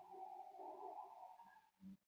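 Near silence, with only a faint tone fading away.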